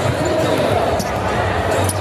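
Basketballs bouncing on a hardwood arena court, a few sharp bounces over a steady hum of voices in the big hall.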